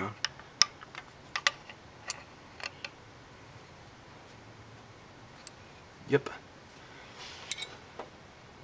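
Light metallic clicks and taps, about half a dozen in the first three seconds and one more near the end: a small steel tool against a valve shim and its bucket as the shim is nudged down to seat in a shim-and-bucket valve train.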